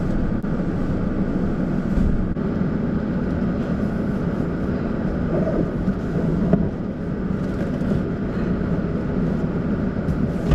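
Steady rumble of a running vehicle, with a few faint knocks as a large cardboard box is pushed into the car's back seat.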